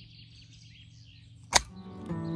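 A self-inking rubber stamp clicks sharply once, about one and a half seconds in, as it comes off a logbook page. Faint birdsong is heard behind it.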